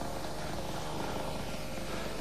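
Small petrol engine of a motorised scooter running at a steady speed, a buzz that holds one pitch.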